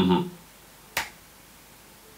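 A short murmur from the man right at the start, then one sharp click about a second in.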